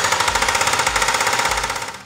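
Backhoe-mounted hydraulic breaker hammering reinforced concrete, a rapid, even run of blows that fades near the end.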